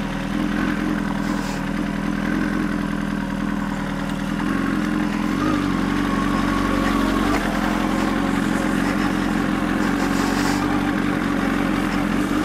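Honda CBR1000RR sport bike's inline-four engine running at low revs as the bike rolls slowly, a steady even note that shifts slightly in pitch a couple of times.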